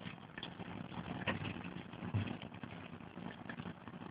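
Faint steady hiss with a few soft clicks and a low thump.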